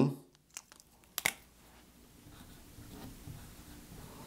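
A few short clicks, then faint scratching of a dry-erase marker writing letters on a whiteboard.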